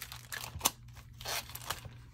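Clear plastic sleeve crinkling and rustling as it is opened by hand: a string of short, quiet crackles, with a sharper snap about two-thirds of a second in.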